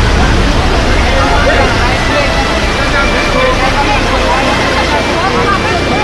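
Flash-flood water rushing loudly across open ground in a dense, continuous wash of noise, with people's voices shouting faintly underneath.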